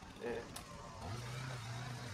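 Gas string trimmer being started: a sharp click about half a second in, then the engine running with a steady low hum from about a second in.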